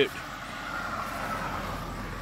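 Vehicle traffic: a steady rumble that grows louder near the end, with a faint thin whine above it.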